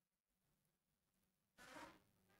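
Near silence: faint room tone with a steady low hum, and one brief faint noise near the end.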